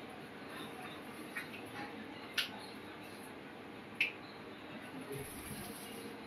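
Faint wet squelching of chicken pieces being mixed by hand in a thick yogurt-and-spice marinade, with two short clicks about two and a half and four seconds in.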